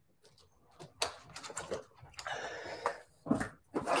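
After about a second of near silence, a man breathes out hard and noisily after a drink from a water bottle, with clicks and rustling close to the microphone and a louder burst near the end.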